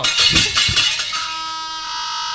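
Javanese gamelan striking up: bronze metallophones ring out brightly together with a few drum strokes, then settle into steady sustained ringing tones.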